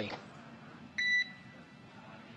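A single short electronic beep on the radio communication loop, about a quarter second long, about a second in, over faint hiss.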